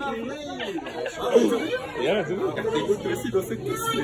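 Speech only: young men chattering, with no other distinct sound.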